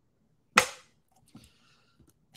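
A single sharp, loud burst about half a second in, dying away within about a third of a second.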